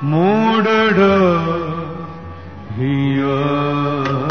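A male voice singing a phrase of Sikh classical kirtan: it opens with a rising glide into ornamented, wavering notes, fades about halfway through, then settles on a new long held note near the end.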